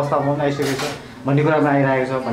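A man speaking, with a short hissing or clinking noise a little over half a second in, and a brief pause about a second in.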